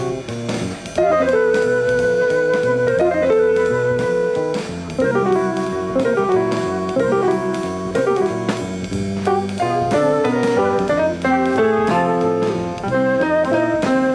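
Live jazz band playing a jazz waltz: sustained, melodic lead notes, some scooping up in pitch, over guitar, bass and drums.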